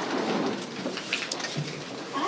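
Painted wooden chairs being pulled out from a table and sat on across a stage floor: scraping, small knocks and clothing rustle, with a low thump about one and a half seconds in.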